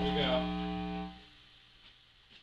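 A sustained note from an amplified instrument rings and slowly fades, then is cut off a little over a second in, leaving a quiet room with a few faint clicks. A brief spoken word sounds over the note near the start.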